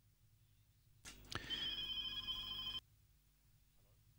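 A short bell-like ringing, several steady tones over a rattling noise, lasting under two seconds. It starts about a second in with a click and cuts off suddenly.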